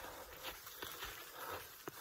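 Faint, irregular footsteps of a hiker walking on a snowy trail.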